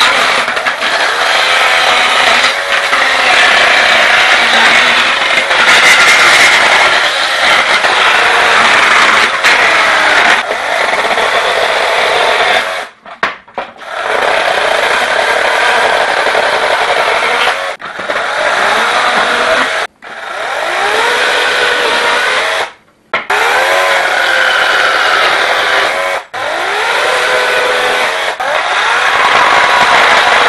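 Lynxx 40-volt battery chainsaw with a brushless motor cutting through pallet boards, the chain running at full speed in the wood. Several times the motor stops briefly and spins back up with a rising whine.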